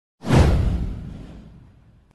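Whoosh sound effect with a deep low end, starting suddenly a moment in and fading away over about a second and a half.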